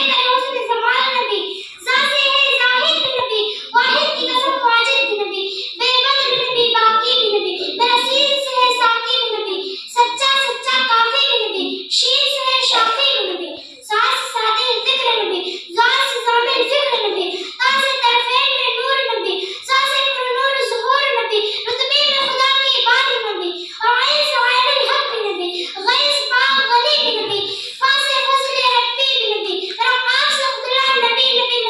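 A young girl's voice through a microphone and PA, reciting in a chanted, sing-song delivery, in phrases of about two seconds each.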